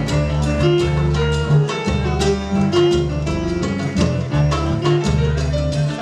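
Live piano music in a lively Latin-tinged rhythm, with a moving bass line under a melody of quick, sharply struck notes.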